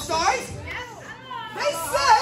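Children's voices calling out from the audience in short bursts.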